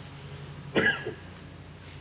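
A single short cough about a second in, over a steady low hum.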